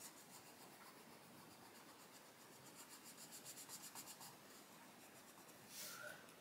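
Faint scratching of a Derwent Lightfast coloured pencil shading on paper, in small uneven strokes.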